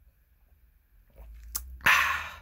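Near silence while a small shot of water is drunk from a mug, with faint handling sounds and a light click. Near the end comes a sharp, breathy exhale after the swallow.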